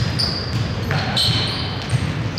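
Basketball game on a hardwood gym floor: sneakers squeak in short high chirps a few times and the ball thumps on the floor, echoing in the large hall.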